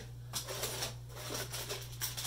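Faint clicks and light rustling of packaged toy cars being handled on a desk, over a steady low electrical hum.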